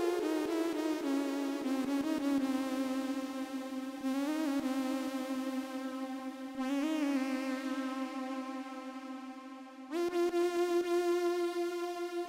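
A single synthesizer lead note played on a hardware keyboard synth. It slides down in pitch at the start, then is held, with two brief upward bends and its tone shifting as the knobs are turned. About ten seconds in it jumps to a new, higher held note.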